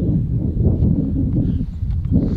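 Footsteps on a dirt and gravel bush track, a few soft thuds over a steady low rumble on the microphone.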